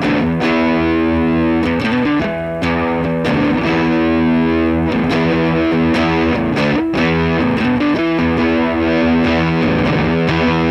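Electric guitar with a single-coil pickup played through a hand-built Jordan Bosstone fuzz clone into a Dumble-style amp: sustained, distorted chords and notes ring out, with new strums every second or two. The guitar's volume is rolled back to about halfway, where the fuzz starts to really come in.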